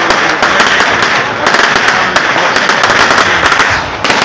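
Fireworks crackling: a loud, dense, rapid crackle of many small pops from crackling stars, which eases slightly near the end.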